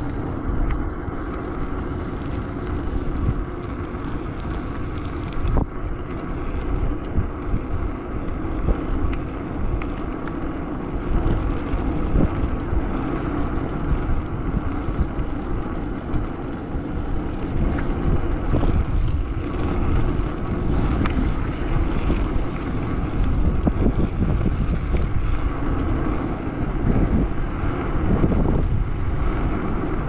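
Wind rushing over the microphone of a moving bicycle, with steady tyre and road noise from riding along a paved road.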